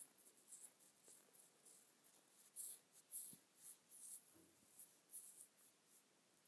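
Faint, irregular scratching strokes, a few a second, over near silence, with a soft low knock about three seconds in.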